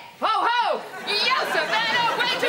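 A woman shrieking and whooping with excitement: a run of high-pitched cries whose pitch rises and falls.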